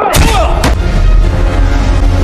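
Film fight punch sound effects: a heavy hit about a tenth of a second in and a second, sharper one about two-thirds of a second in, over a loud music track.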